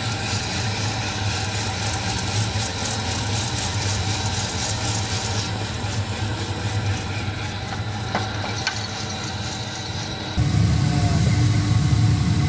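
Drum coffee roaster running: a steady motor and fan hum with a faint high whine. About ten seconds in, the sound turns suddenly louder and rougher as the cooling tray's rotating arms stir the freshly roasted beans.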